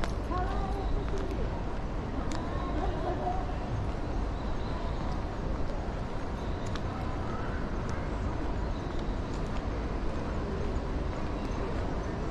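Outdoor urban ambience: people talking at a distance over a low steady rumble, with a few scattered footsteps on paving.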